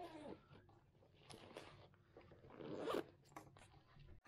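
Faint zipper and rustling of a backpack being opened and handled, in a few short rasping strokes, the loudest about three seconds in, with a brief squeak near the start.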